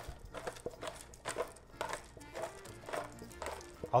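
A hand-twisted pepper grinder cracking peppercorns: a string of irregular dry clicks, with faint background music underneath.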